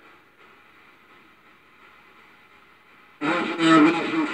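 Spirit box sweeping radio frequencies: a faint steady hiss of static, then about three seconds in a sudden loud burst of a voice-like radio fragment.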